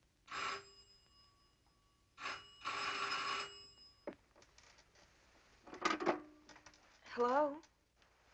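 A telephone bell ringing: a short ring, then a longer ring of about a second, followed by a few knocks and clicks.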